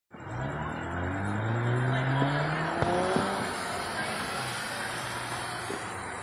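A car driving along the street, its engine pitch rising steadily as it accelerates over the first few seconds, over steady tyre and road noise. Two short sharp pops come about three seconds in.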